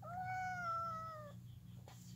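Tabby kitten giving one long meow that slowly falls in pitch and lasts just over a second.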